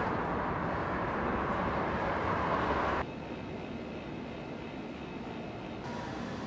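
Steady road traffic noise from a busy multi-lane street, dropping suddenly to a quieter background hum about halfway through.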